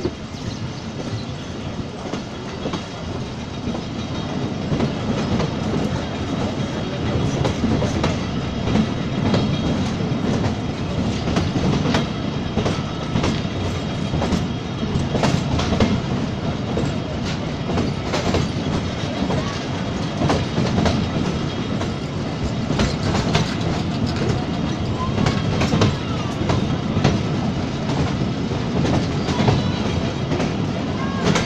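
A train running at speed, heard from aboard, its wheels clattering over the rail joints in a rapid, uneven run of clicks over a steady low rumble. It grows louder over the first several seconds.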